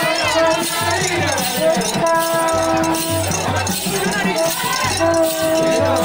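Group singing at a traditional dance with rattling percussion, while a plastic vuvuzela horn blows long, steady one-pitch notes about a second each, twice.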